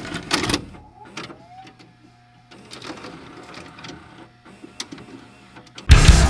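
Mechanical clicks, knocks and a brief whirring glide over a steady low hum, a sound-effect intro to the track. Near the end a heavy metal band comes in with a loud hit of distorted electric guitars and drums.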